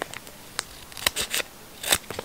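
Scissors snipping into a cleaning-kit packet: several short, crisp cuts, the loudest just before the end.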